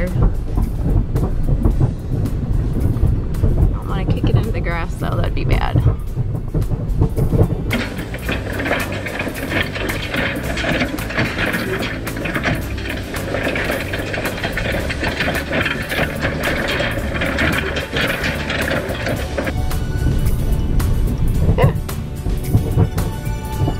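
A vehicle's low engine and road rumble heard from inside the cabin while it tows an old four-bar hay rake across a field, with a dense metallic clattering from the rake's bars and tines from about eight seconds in; the rake sounds so bad.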